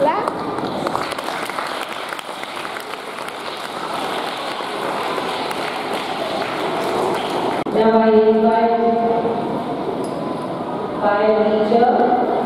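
Audience applauding, a steady clatter of many hands that stops abruptly past the middle, followed by voices with long held pitches.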